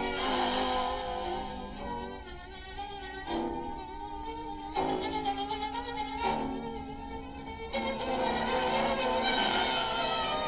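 Orchestral newsreel score with bowed strings, played as a series of long held notes that move to new pitches every second or two.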